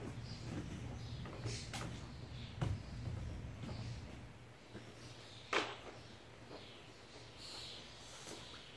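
Scattered knocks and clatter from a garden hose being handled and fed into a hot tub to drain it, the sharpest knock about halfway through. A low steady hum underneath fades out about halfway.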